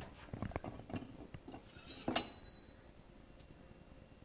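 A metal frying pan knocking and scraping on a gas stove's grates, several knocks in the first two seconds, then a bright metal clink about two seconds in that rings briefly.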